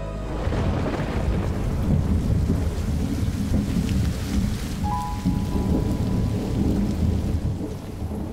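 Rolling thunder rumbling over steady, heavy rainfall.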